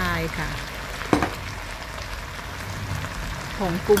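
Chinese kale and crispy pork sizzling in a hot wok, a steady frying hiss, with one sharp tap about a second in.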